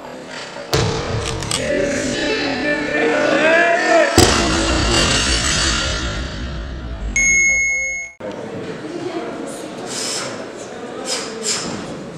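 A loaded barbell with bumper plates dropped onto a wooden lifting platform, hitting with a single heavy thud about four seconds in, over voices and music in the hall. Later an electronic beep of a few steady tones sounds for about a second, and the sound then cuts off suddenly.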